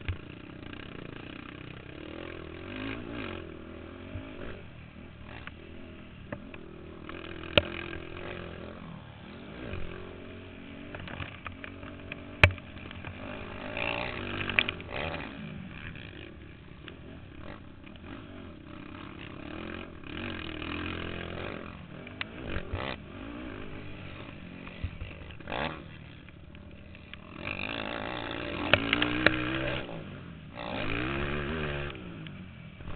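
Racing ATV engine heard from a camera mounted on the quad, revving up and falling back again and again as it works around a dirt track. Sharp knocks and rattles come through from the mount over bumps, and the revs are at their loudest near the end.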